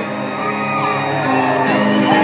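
Live rock band holding sustained electric guitar and bass chords, with whoops and shouts over the music.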